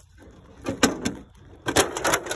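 Clunks and rattles of a lawn tractor's brittle plastic hood being pulled and worked loose: a few sharp knocks, then a louder burst of knocking near the end.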